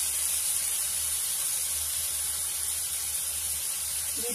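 Hot oil sizzling steadily in a wok as sliced onions and whole spices (bay leaf, cinnamon, cardamom, cloves) fry.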